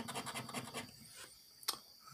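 A round hand-held scratcher scraping the coating off a scratch-off lottery ticket in quick, even strokes, about ten a second, stopping about a second in. A single sharp click follows near the end.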